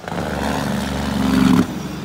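A motor vehicle passing close by, its engine growing louder to a peak about a second and a half in, then dropping away suddenly.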